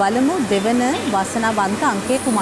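Air-mix lottery draw machine's blower running steadily, keeping the balls tumbling in its glass sphere, with a voice speaking over it.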